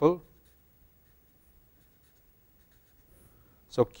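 Faint scratching of a felt-tip permanent marker writing short letters on paper.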